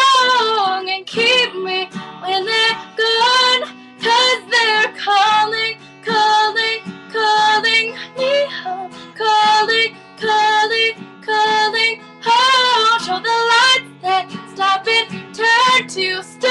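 A young female voice singing a pop ballad over strummed guitar chords, phrases rising and falling in pitch with short breaths between them.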